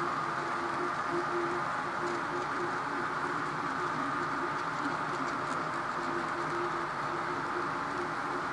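An HO scale model freight train rolling steadily past on its track: a continuous running noise of the cars' wheels on the rails, with a low tone that breaks on and off.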